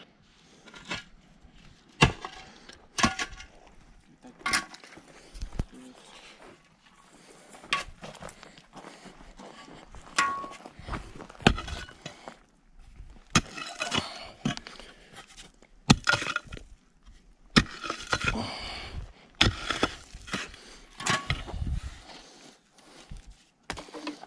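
Steel spade digging into dry, stony soil: irregular sharp chops and scrapes of the blade against earth and stones, roughly one a second.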